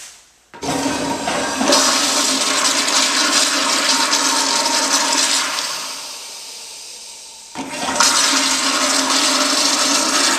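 An American Standard commercial toilet flushing: a sudden loud rush of water about half a second in that dies away after a few seconds. A second loud rush of water starts abruptly near the end.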